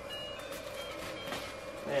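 Faint crinkling and rustling of plastic gift wrap being pulled and handled, over a steady low hum.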